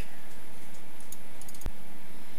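A few light clicks of computer input as an attachment is opened on screen: a couple about a second in and a quick cluster near the end, over a steady faint hum.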